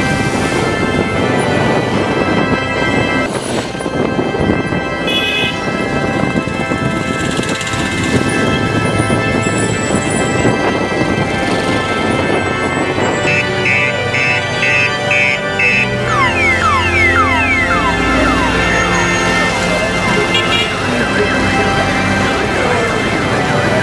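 Background music with steady sustained tones throughout, and a run of short, quick rising sweeps in the second half.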